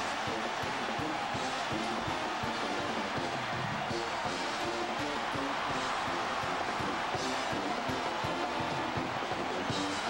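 Music with a changing melody over steady crowd noise in an arena.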